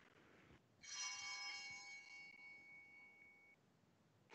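Altar (sanctus) bell struck once, a bright ring starting about a second in and fading away over about three seconds. It is rung to mark the elevation of the consecrated Host.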